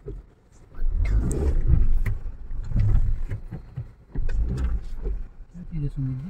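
Inside a car cabin, a car driving slowly along a rutted dirt lane, with an uneven low rumble from the road that rises about a second in and eases off near the end.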